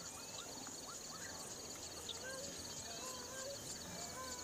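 Faint open-air ambience: a steady, rapidly pulsing high insect chirping, with a few short wavering whistled animal calls about two and three seconds in.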